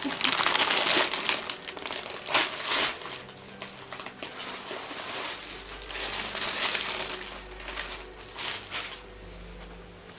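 Packaging crinkling and rustling as it is handled. It is loudest in the first three seconds and comes again briefly about six to seven seconds in.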